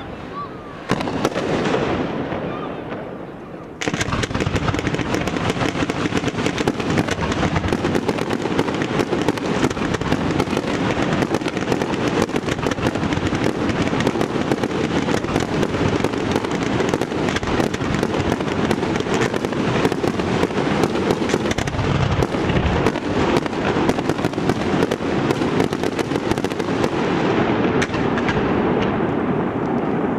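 Fireworks display: fainter bursts for the first few seconds, then from about four seconds in a dense, continuous barrage of rapid bangs and crackling that does not let up.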